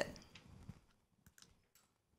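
Three or four faint clicks from a handheld presentation remote as the slide is advanced, after the tail of a spoken word fades out in the room.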